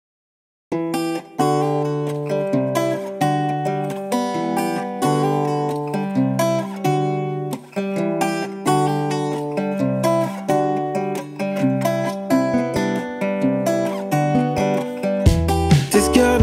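Instrumental intro of a singer-songwriter song, led by acoustic guitar playing repeating plucked and strummed chords; it starts abruptly just under a second in, and a deeper low end joins just before the end.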